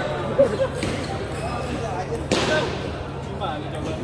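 Table tennis balls clicking on tables and bats over the voices of a busy sports hall, with one sharp crack about two seconds in.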